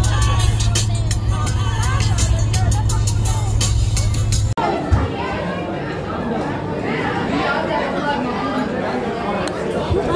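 Steady low engine drone inside a moving bus with music playing over it; about halfway through it cuts off abruptly to many people talking at once in a crowded room.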